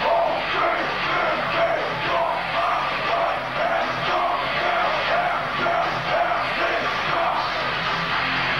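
Industrial metal band playing live through a PA, with distorted electric guitar and drums running on continuously in a repeating riff. Recorded from among the audience on a camcorder, so it sounds dull and lacks treble.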